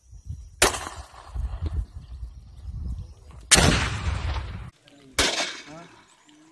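Three loud gunfire reports from a rifle fitted with a 40 mm underbarrel grenade launcher (UBGL-M6), each followed by a trailing echo, spaced a few seconds apart.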